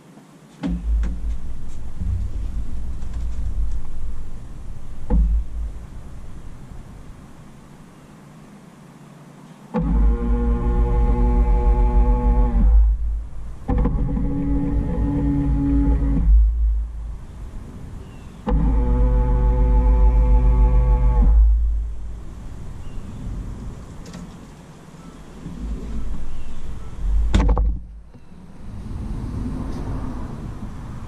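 Electric power-fold motors of aftermarket towing mirrors on a Ford F-150 whining as the mirrors fold and unfold, in three runs of about three seconds each, after a low rumble in the first few seconds.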